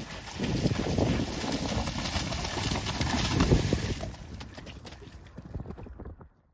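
Connemara pony's hooves beating through shallow water as it canters through a water jump, with splashing. The sound fades out over the last couple of seconds.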